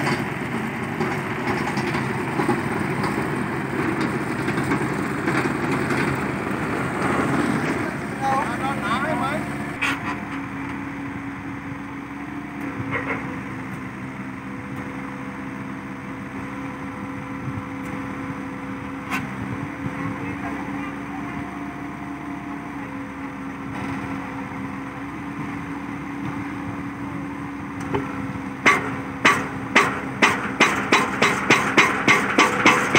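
Small excavator's engine running at a steady pitch, with people's voices mixed in over the first several seconds. Near the end, fast, evenly spaced drum beats of music come in.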